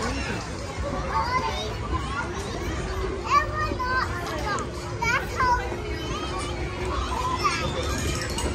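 Children playing and calling out in a busy playground, with high-pitched children's voices, most of them clustered in the middle, over general crowd noise. A steady low tone starts about three seconds in and runs on beneath them.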